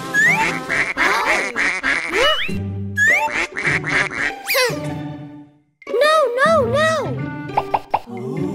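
Children's cartoon background music with comic sound effects: quick rising slide-whistle glides and cartoon duckling quacks and vocal calls. The sound drops out briefly a little past halfway, then the music and calls resume.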